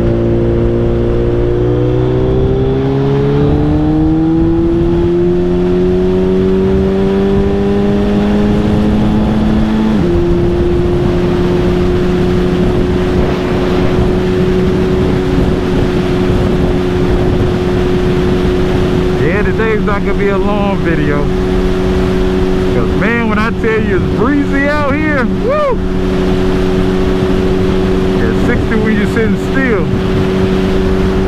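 Suzuki Hayabusa's inline-four engine pulling steadily up through the revs, then dropping in pitch at an upshift about ten seconds in, after which it holds a steady cruise.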